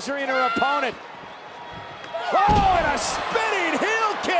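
A heavy thud of a body landing on the wrestling ring mat about two and a half seconds in, as a spinning heel kick drops the opponent. Shouting voices come before and with the impact.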